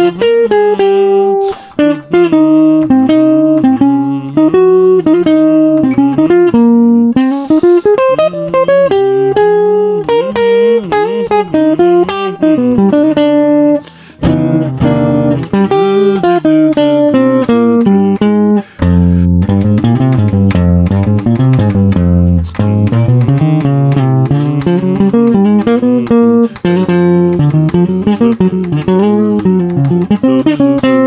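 Hollow-body archtop jazz guitar played solo, with no backing: improvised single-note lines that move to lower, fuller notes about two-thirds of the way in.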